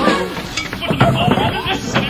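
Music from a short opera: voices singing or speaking over instrumental accompaniment.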